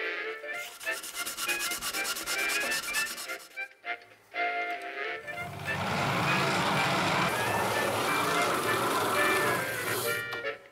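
Background music with a steady beat. From about five seconds in, a hand-cranked grinding wheel runs with a steady rasping noise, louder than the music.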